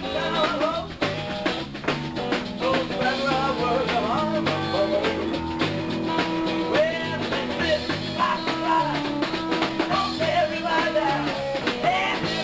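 Live blues-rock band playing electric guitars over a drum kit, with a wavering lead line above a steady beat.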